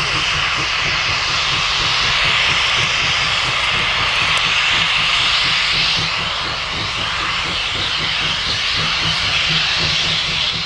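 Steam locomotive working a train: a steady roar of exhaust and hissing steam, easing slightly after about six seconds.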